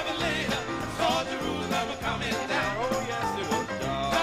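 A live band playing a gospel song in a country style, a voice singing over the instruments to a steady beat.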